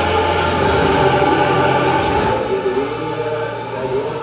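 Choir music with sustained, held chords over a low bass line. The bass drops out about halfway through and the music grows a little quieter.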